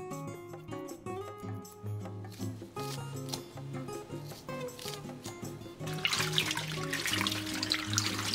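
Background music throughout, with faint snips of kitchen scissors cutting dried pollack in the first seconds. From about six seconds in, water splashes and sloshes as soaked dried seaweed is rinsed by hand in a steel bowl.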